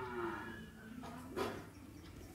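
Marker writing on a whiteboard: faint strokes, with one sharper tap about one and a half seconds in. A long, low, sustained pitched sound fades out at the very start.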